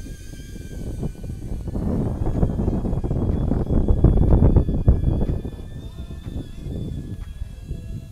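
DJI Avata FPV drone in flight, its propellers giving a thin steady whine, under heavy wind buffeting on the microphone that is loudest in the middle.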